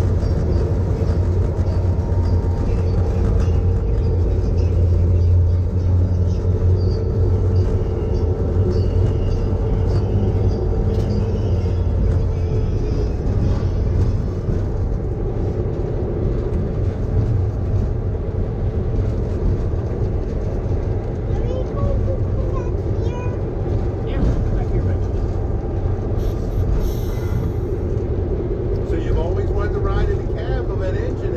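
Diesel locomotive B&O #6405 running steadily as it rolls slowly along the track: a low engine drone with a constant hum above it and a rumble underneath, easing slightly in the second half.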